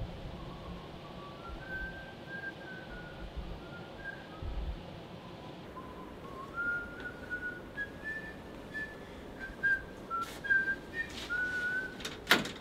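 A person whistling a slow tune, one note at a time, wandering up and down in pitch. A few faint clicks come in near the end.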